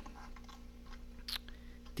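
Quiet handling noises: a few faint light clicks as a die-cast toy car and a thin brass tube are handled on a cutting mat, over a steady low hum.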